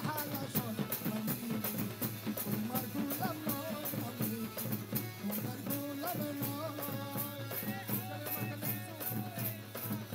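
Live Bengali devotional (Maizbhandari) song: a male singer with harmonium, accompanied by dhol and tabla drums and bright hand percussion keeping a steady fast beat.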